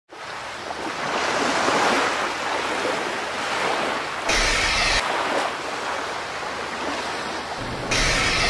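Intro sound effect of surf-like rushing noise that swells and ebbs like breaking waves. A short burst of static-like hiss cuts in about four seconds in, and another near the end.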